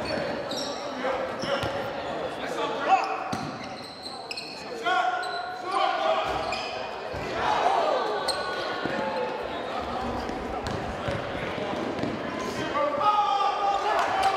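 Basketball bounced on a hardwood gym court during play, with sneakers squeaking and players and spectators shouting, all echoing in the large hall. A single sharp knock about three seconds in is the loudest sound.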